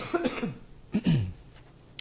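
A man coughing: three short coughs within about the first second and a half.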